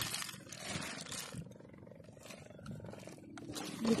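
Rustling, crackling and clicking of a nylon net and a heap of snails and wet plant stalks being sorted by hand, busiest in the first second and a half, then fainter scattered clicks.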